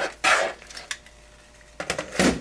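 Handling noise as the HPI Baja 5B chassis, its engine now mounted, is flipped over by hand: a short burst of noise just after the start, then a few sharp knocks near the end as it is set down on the table.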